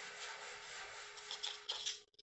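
Faint rustling and crunching of gritty potting mix, cactus substrate with carbonized rice husk, as fingers press it around the base of a plant in a plastic pot, with a few small ticks near the end.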